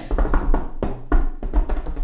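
Hands tapping and knocking on a wooden desktop in a quick, irregular run of knocks with dull thumps, a re-creation of tapping noises heard in a house at night.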